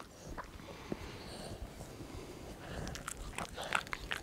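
A Chihuahua licking a man's face: faint scattered mouth clicks, then a quick run of small clicks near the end.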